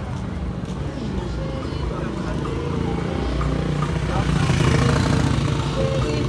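Street noise: people's voices and small motorcycle engines, growing louder about four seconds in as a motorcycle comes close.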